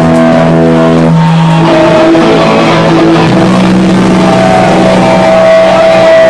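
Hardcore punk band playing live: heavily distorted electric guitar and bass holding long, loud chords that change pitch every second or two.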